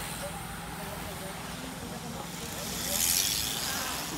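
Faint, indistinct voices of people talking in the background over a steady outdoor noise, with a brief swell of hissing noise about three seconds in.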